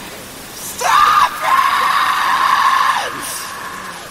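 A voice screaming one long, high held note for about two seconds, starting about a second in and sliding down as it breaks off, with no band playing under it.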